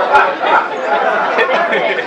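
Congregation calling out overlapping spoken responses of "amen" in a large hall, answering the preacher's call.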